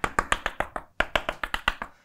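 Chalk tapping quick dots onto a blackboard: a rapid run of sharp taps, roughly ten a second, with a brief pause about a second in before a second run.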